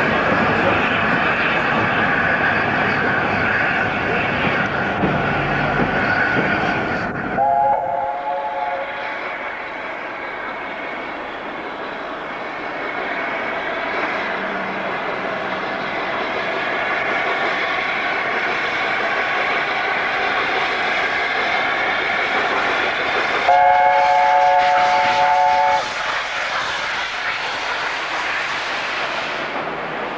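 LNER A4 Pacific steam locomotive 60009 working a train with steady exhaust and running noise, sounding its three-note chime whistle twice: a short blast about eight seconds in and a longer one of about two seconds three-quarters of the way through.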